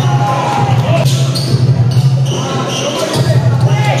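A basketball bouncing on a concrete court amid crowd chatter, with a steady low drone underneath.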